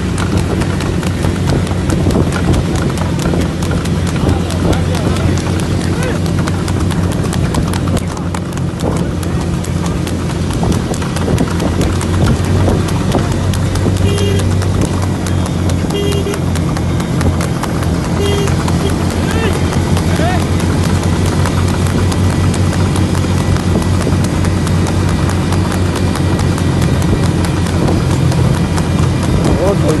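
Hooves of a horse pulling a tanga racing cart clip-clopping rapidly on asphalt at a fast trot. Underneath runs the steady drone of engines from vehicles travelling alongside.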